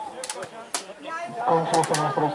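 Faint distant voices with a few short, sharp clicks, then a man starts speaking close to the microphone about a second and a half in.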